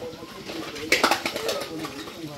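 A bird calling in low, wavering notes, with a short clatter about a second in while dishes are washed by hand.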